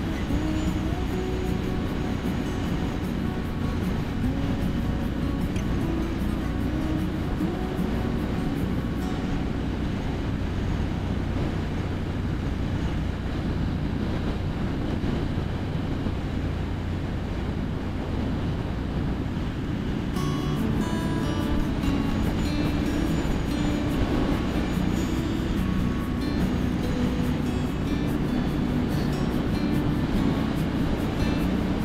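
2017 Triumph Street Scrambler's 900 cc parallel-twin engine and wind noise on a helmet microphone at steady cruising speed, with music playing over it.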